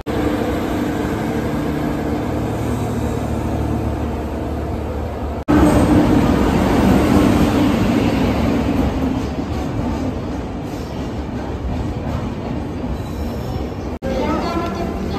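Trains rolling past on the tracks: at first the steady rumble of a freight train of tank wagons, then, after a sudden break about five and a half seconds in, the louder run of an electric locomotive and its passenger coaches coming alongside the platform, easing off toward the end.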